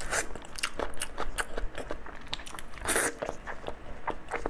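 Close-miked mouth sounds of eating braised pork trotter: wet, sticky chewing with many quick lip smacks and clicks, and a louder bite or slurp about three seconds in.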